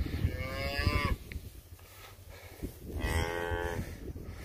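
Cattle mooing: two calls of about a second each, one at the start and another about three seconds in.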